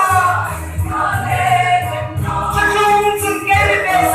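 A large mixed choir of men and women singing a gospel hymn together, holding long notes that change pitch every second or so.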